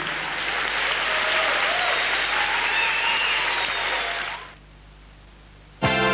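Studio audience applauding, dying away about four and a half seconds in. Music begins just before the end.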